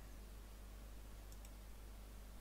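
Quiet room tone with a low steady electrical hum, and two faint clicks about two-thirds of the way through.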